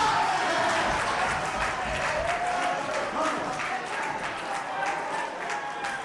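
Congregation clapping, with voices calling out over it; the clapping eases off near the end.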